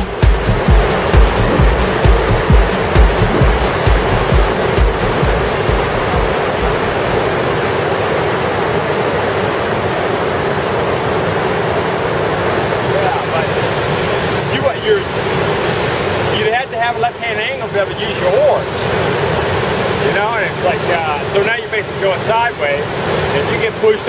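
Steady rushing of a big whitewater rapid, Upset Rapid on the Colorado River. A music track's beat runs over it at first and fades out within the first several seconds, and people's voices come in over the water in the second half.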